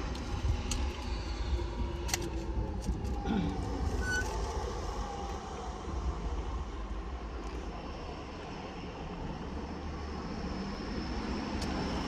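Steady low rumble of road traffic heard from inside a car, with a few small clicks as a plastic water bottle is handled.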